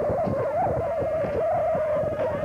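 A steady, slightly wavering sustained tone with rough, rumbling noise beneath it.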